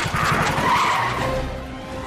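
Cartoon sound effect of the wooden spin cake machine cart speeding away: a noisy, rumbling rush that fades over the second second, over background music.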